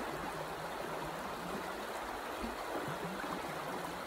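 Shallow rocky creek flowing: a steady rush of water.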